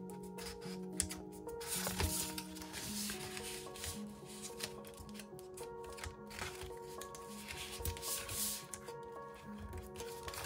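Background music of held notes, with several bouts of cardstock rustling as a paper box base is folded and handled.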